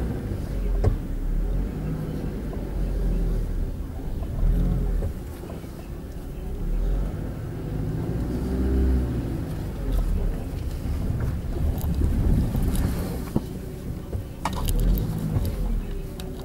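Low, gusting rumble of wind buffeting a handheld camcorder's microphone, rising and falling unevenly, with a few short knocks of handling noise, most of them near the end.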